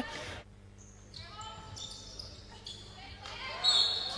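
Quiet court sound: a basketball bouncing on a hardwood floor, with faint voices in the hall.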